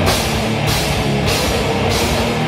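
A death metal band playing live, with electric guitars and a drum kit; cymbals crash in a steady pulse, a little under two hits a second.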